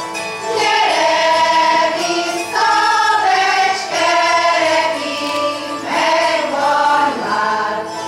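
Hungarian folk choir of women's and men's voices singing a folk song together in long, held phrases, accompanied by a citera (Hungarian zither).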